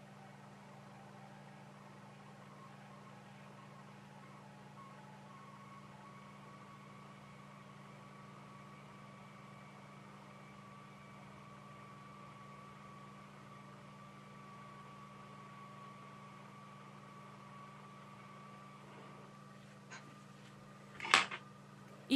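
A hot air rework station blows at low airflow over a phone motherboard chip to reflow its solder: a faint, steady hum with a thin high whine that fades out near the end. Just before the end comes a small click, then a louder sharp knock.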